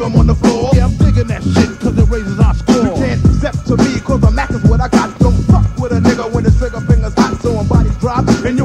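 Hip hop track playing from a cassette tape: rapping over a steady, rhythmic drum beat.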